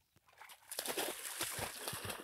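Splashing and sloshing of shallow pond water as a German shorthaired pointer puppy bounds out through it after a thrown training bumper, starting about half a second in.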